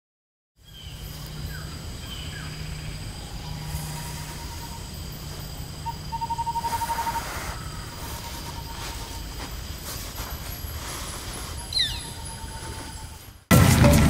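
Outdoor ambience with birds calling: thin whistled notes, a fast trill about halfway through and short chirps near the end. Percussive music cuts in just before the end.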